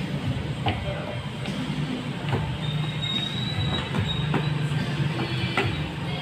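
Steady low mechanical hum with scattered light clicks, and a faint thin high whine for about a second and a half in the middle.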